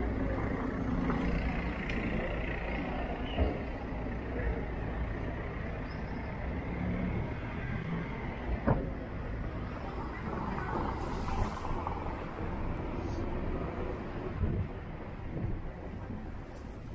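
Street ambience with a motor vehicle engine running nearby, strongest in the first few seconds and fading, a sharp click near the middle, and a short hiss about eleven seconds in.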